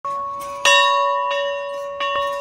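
A bell struck about every two-thirds of a second, the second strike the loudest, each one ringing on with a steady tone.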